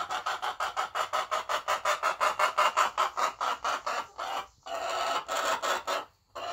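Hens clucking in a rapid, even run of about six or seven clucks a second, broken briefly a little past four seconds in.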